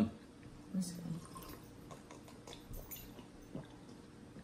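Quiet table sounds of eating and drinking: a short low hummed "mm" about a second in, then faint scattered clicks and small wet sounds.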